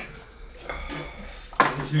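Plastic food tubs and drinkware clattering on a table as they are handled, with a short ringing tone near the middle and a louder clatter near the end.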